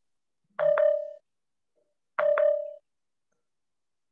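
Two short, steady electronic beeps about a second and a half apart, each lasting about half a second, with a sharp click inside each.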